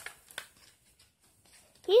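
A picture book's paper page turned by hand: a brief rustle and flap in the first half-second.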